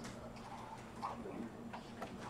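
A few faint, irregular clicks of laptop keys being typed, over quiet room tone.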